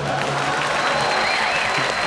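Studio audience applauding in a burst of clapping that starts at once after a comedian's punchline.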